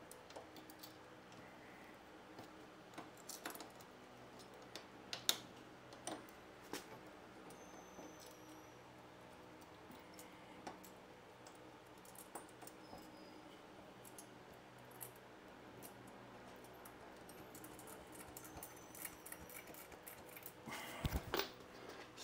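Faint, scattered clicks and light metallic knocks of bolts, spacers and a metal luggage rack being handled and fitted to a motorcycle's grab rail mounting points, with a sharper knock about five seconds in and a short run of knocks near the end.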